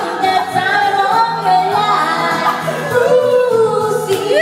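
Karaoke music with singing over it: a wavering sung melody above a steady accompaniment.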